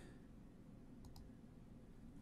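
Near silence with two faint, quick clicks about a second in, a fifth of a second apart.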